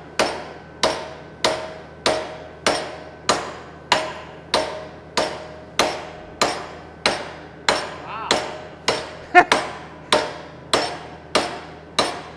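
Hammer blows on a high-carbon steel file welded to mild steel and clamped in a vise, struck in a steady rhythm of about one and a half blows a second, each with a short metallic ring, one blow doubled and louder a little past nine seconds in. This is a hammer test of the weld, which bends over under the blows without cracking.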